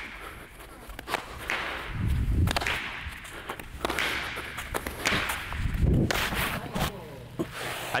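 Fielding and throwing a baseball on artificial turf: footsteps and movement on the turf, with repeated sharp smacks of the ball and a rushing noise behind them.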